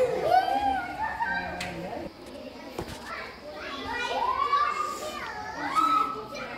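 Children's voices calling and shouting, several overlapping, with a long drawn-out call about four seconds in.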